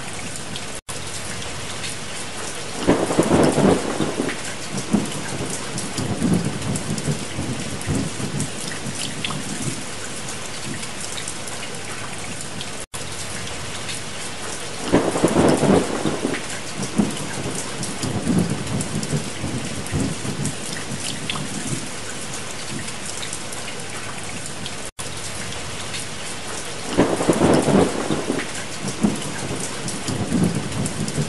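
Steady rain with thunder rolling three times, about twelve seconds apart, each roll loudest at its start and then rumbling off over a few seconds.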